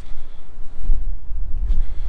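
Wind buffeting the microphone: a loud, uneven low rumble with a faint outdoor hiss above it.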